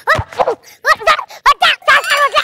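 A voice giving a quick series of short, high-pitched, dog-like yelps, each falling in pitch, about half a dozen in two seconds.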